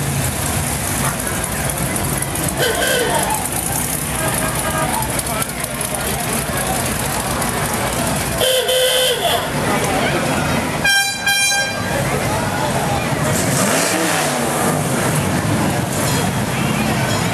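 Classic cars and hot rods cruising slowly past with engines running, and two short car-horn honks, about eight and eleven seconds in, the second brighter and higher. Crowd chatter runs underneath.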